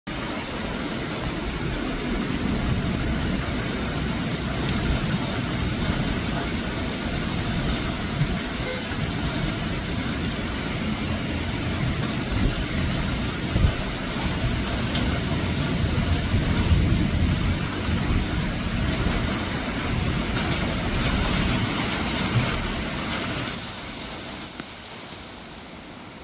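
Convective rain shower falling on palm fronds, trees and clay-tiled roofs: a steady hiss, with a thin high tone running through it. It drops to a softer level about 23 seconds in.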